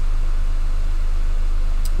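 Steady low electrical-sounding hum with a hiss, unchanging, and a faint click near the end.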